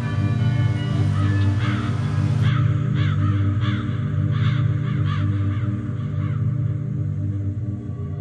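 Background music with a steady low drone, over which a bird gives a long run of harsh, repeated calls, about two to three a second. The calls start about a second and a half in and stop a little over six seconds in.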